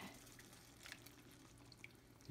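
Faint sound of coconut milk being poured from a tin into a pan of cooking chicken, with a few small drips and splashes.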